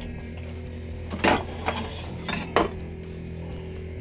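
Four short, sharp metallic clanks and scrapes as a steel knife blank is worked loose and lifted out of a milling-machine vise, over a steady low hum.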